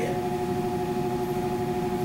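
A steady, unchanging droning hum with a few constant pitched tones: the room's background machine noise during a pause in speech.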